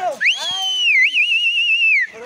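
A loud whistle: it rises, holds, dips about halfway through and then wavers quickly until it falls away at the end. A man's shout sounds under its first half.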